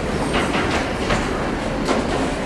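Handling noise at a lectern microphone: four or five soft knocks and rubs over a steady low rumble, as things are set down and moved on the lectern.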